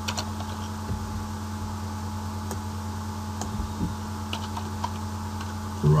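Scattered keystrokes on a computer keyboard as a line of code is typed, over a steady low electrical hum.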